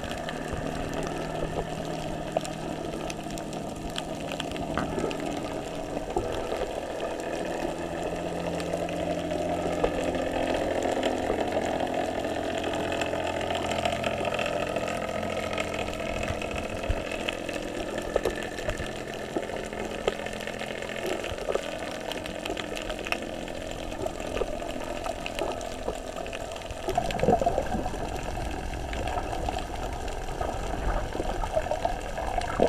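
Underwater sound picked up by a GoPro in its waterproof housing: muffled water noise with a steady low hum that shifts and drops out now and then. Near the end the water noise grows louder for a moment.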